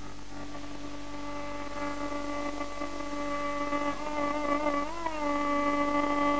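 Carnatic music in raga Kharaharapriya: a quiet drone with a low mains hum, then a long held melodic note from about two seconds in. Near the end the note wavers in ornamental oscillations (gamakas) before settling again.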